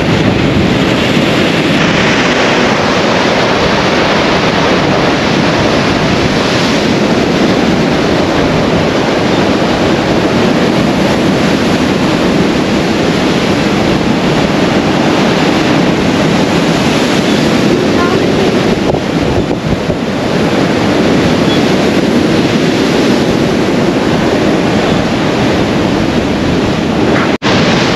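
Rough sea surf breaking and washing against a concrete seawall and its steps, a loud continuous wash with wind buffeting the microphone.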